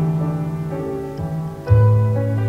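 Pipe organ playing slow music in held chords over sustained bass notes, with a lower bass note coming in near the end.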